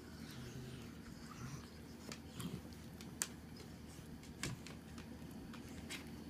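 Faint rustling of a hand petting small dogs in their clothes and fabric bed, with a few sharp clicks, the loudest about three seconds in.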